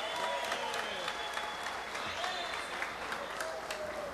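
An audience applauding, many hands clapping steadily, with faint voices underneath.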